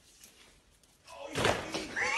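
A sudden loud bang, like a slam or knock, about a second in after near quiet, dying away within a second.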